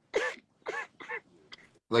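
A man laughing in three short, stifled bursts, muffled by a hand held over his mouth.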